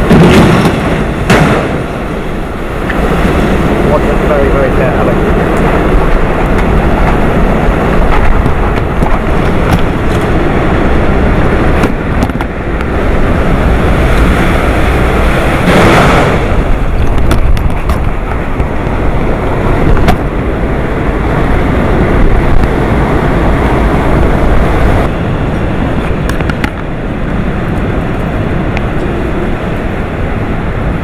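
Typhoon-force wind blowing in strong gusts, buffeting the microphone, with driving rain. A loud burst at the very start and another about halfway through.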